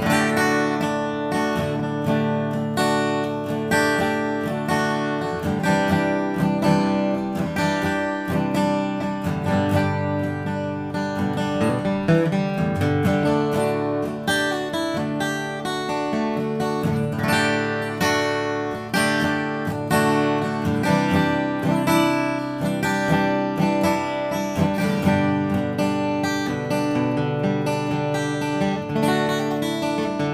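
Steel-string acoustic guitar strummed and picked in a steady rhythm, one chord flowing into the next with many strokes.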